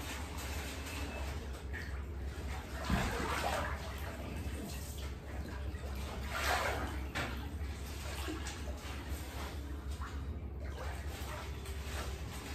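Water sloshing and splashing in an inflatable paddling pool as a person shifts and lies back in it, with louder swells about three seconds and six and a half seconds in.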